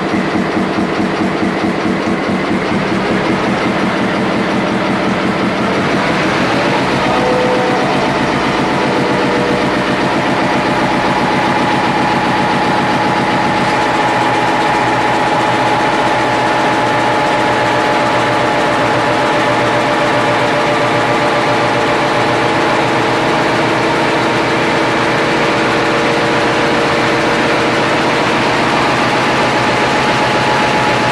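Nohab diesel locomotive's EMD two-stroke diesel engine running loud and steady, heard up close inside the engine room. Its note shifts slightly about six seconds in.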